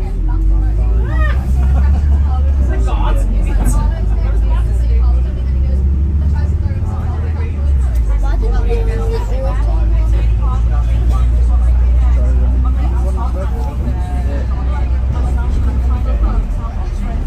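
Bus engine and drivetrain rumbling steadily while under way, heard from inside the passenger cabin, with passengers' voices chattering in the background.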